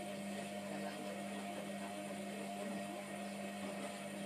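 Hotpoint Aquarius WMF720 front-loading washing machine in its wash phase: the drum motor gives a steady hum while the wet, sudsy load turns in the drum.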